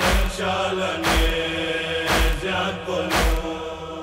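The wordless backing of a noha, a Shia lament: chanted vocals and a steady drone over a deep beat about once a second.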